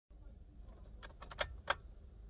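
Car keys jangling and clicking in the ignition of a Kia Morning as the key is turned to the on position: a run of light clicks about a second in, then two sharper clicks near the end.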